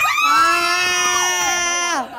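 Excited shrieking from people at a party game: one long, high scream that starts abruptly and is held for about two seconds, with a second voice sliding in pitch alongside it.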